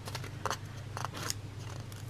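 Clear sticker sheet being handled and flexed between the fingers: a few faint crinkles and clicks of the thin sheet, over a low steady hum.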